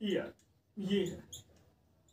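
Marker squeaking in short strokes on a whiteboard while writing, with a man saying a couple of words.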